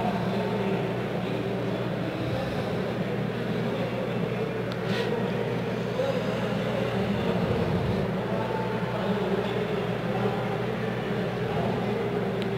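Steady background noise of a busy event hall: a constant low hum and hiss with no clear single source, and a faint click about five seconds in.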